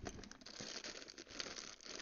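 Faint rustling with many small clicks: handling noise close to the microphone.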